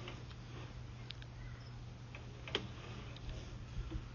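Sewer inspection camera rig as its push cable is drawn back through a four-inch clay sewer pipe: a steady low hum with faint, irregular clicks and ticks. The sharpest click comes a little past halfway.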